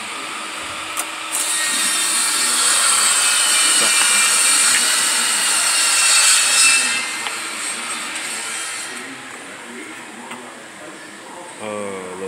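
Galvanized steel brackets being rummaged and slid against each other and the cardboard bin: a scraping, rustling noise that swells from about a second in and fades out after several seconds.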